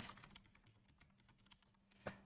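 Faint computer keyboard typing: a run of light, quick key clicks over a faint steady low hum.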